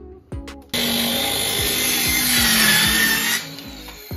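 Circular saw cutting through a plywood sheet. The cut starts suddenly about a second in, runs for about two and a half seconds with its whine sagging a little under load, and stops shortly before the end. Background music plays underneath.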